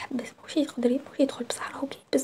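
Speech only: a person talking in a steady run of short phrases.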